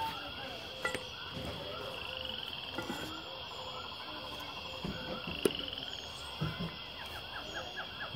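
Many small birds chirping and calling together without a break, with a buzzy trill twice. A few short knocks stand out over them.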